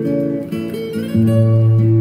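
Recorded solo acoustic guitar music, a waltz by a Brazilian guitarist: melody notes ringing over held bass notes, with a deep bass note coming in a little past halfway.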